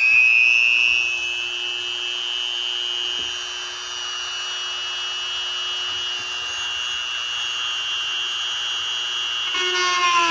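Handheld rotary tool with a cut-off disc spinning up at the start and then running at a steady high whine. Near the end its pitch sags and it gets louder as the disc bites into the plastic RC car body.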